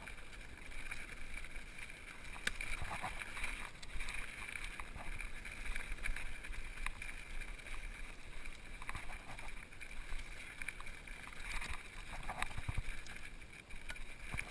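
Mountain bike descending rough rocky singletrack: steady rush of tyres over gravel and loose rock, with frequent small knocks and rattles from the bike as it hits rocks.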